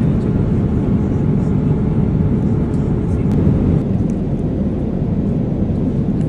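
Airliner cabin noise in flight: the steady, low-pitched noise of the jet engines and the air rushing past the fuselage.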